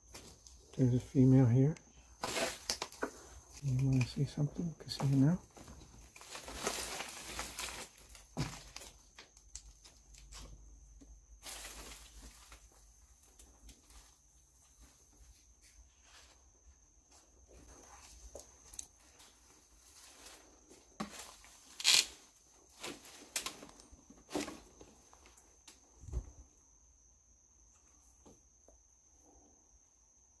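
Scattered crunching and rustling noises, with a few low murmured words in the first five seconds and a faint, steady high-pitched tone throughout.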